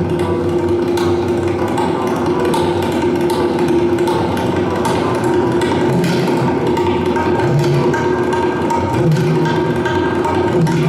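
Tabla played in fast, dense strokes with ringing tuned drum tones and occasional deep bass-drum notes, together with a plucked Afghan rubab.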